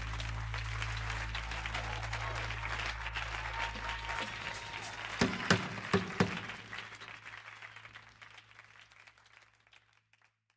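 Audience applause at the close of a live song, heard on an isolated bass-and-drums track, with a held bass note dying away a few seconds in. A few sharp hits stand out in the middle, then the applause fades away near the end.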